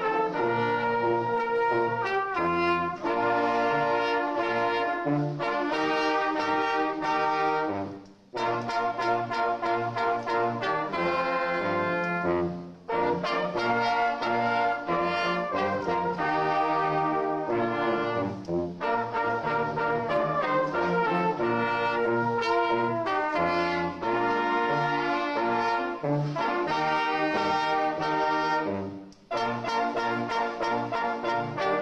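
Brass band playing, with a sousaphone and an upright valved brass horn among the instruments. The music runs in phrases that break off briefly about 8 and 13 seconds in and again just before the end.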